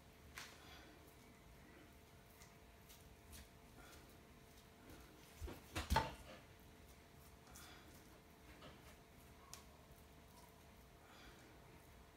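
Soft clicks and scrapes of a metal fork and fingertips peeling skin off hot boiled potatoes on a countertop, with two louder knocks about six seconds in. A faint steady hum lies underneath.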